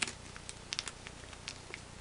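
Clear plastic bag being handled and opened by hand, giving a few faint, short crinkles and clicks spread over the two seconds.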